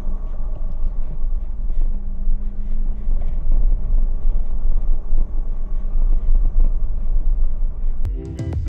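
Steady rumble of a Force Gurkha diesel SUV driving over a rough dirt track, heard from inside the cab, loud and uneven in the lows with the jolts of the bumpy surface.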